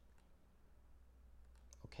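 Near silence with a few faint, isolated computer keyboard keystrokes over a low steady hum.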